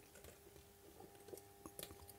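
Near silence: faint room tone with a few faint light ticks, from small parts being handled.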